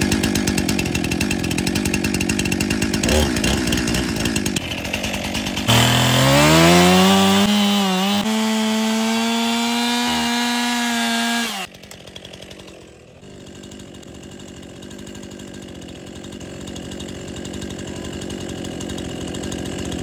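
Gas-powered Stihl chainsaw running loud and rough, then revving up about six seconds in to a steady high-pitched full-throttle whine. It cuts off suddenly about halfway through, leaving a much fainter steady sound that slowly grows louder.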